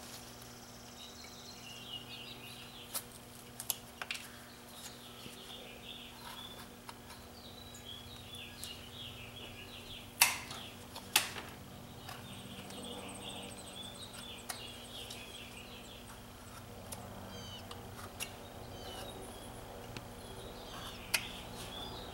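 Knife whittling wood by hand: scattered sharp clicks and snaps as chips are cut off, the two loudest about ten and eleven seconds in. Faint birds chirping and a steady low hum run underneath.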